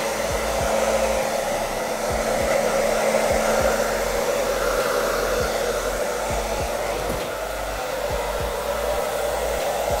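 Handheld hair dryer running steadily, blow-drying a client's hair: an even rush of air over a faint motor hum.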